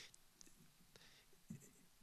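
Near silence: room tone in a pause between speech.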